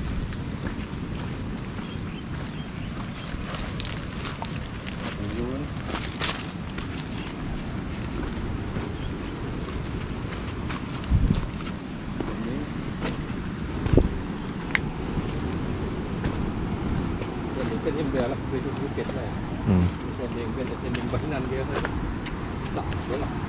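A hiker's footsteps on a leaf-littered forest trail over a steady low rumble of handling and wind noise on the microphone, with three heavier thumps about eleven, fourteen and twenty seconds in.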